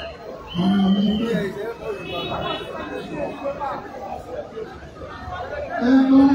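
People talking over one another, with one voice holding a long call about half a second in.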